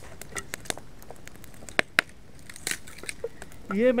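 Burning logs of a Finnish gap fire crackling, with irregular sharp pops; the two loudest come close together about two seconds in.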